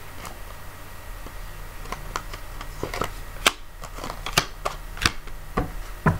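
Playing cards being handled and laid out on a table: an irregular run of light clicks and snaps, thickest from about two seconds in, over a low steady hum.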